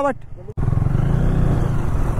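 Motorcycle running while being ridden along a dirt track, a steady low rumble that starts abruptly about half a second in.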